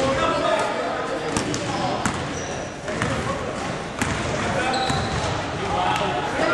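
Basketball bouncing on a hardwood gym floor during play: several sharp bounces about a second apart, with players' voices in the background.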